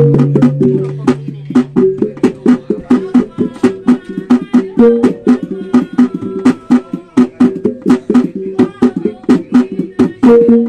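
Sumbanese tabbung ensemble from Wanukaka playing mourning music: a skin hand drum beaten in a fast, even rhythm of about four or five strokes a second over ringing, interlocking gong tones. A deeper gong tone dies away in the first couple of seconds.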